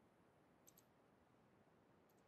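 Near silence with a faint hiss, broken about two-thirds of a second in by a faint double click of a computer mouse button, two ticks a tenth of a second apart.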